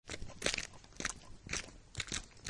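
Footsteps crunching at a walking pace, about two steps a second: a cartoon sound effect of a character approaching.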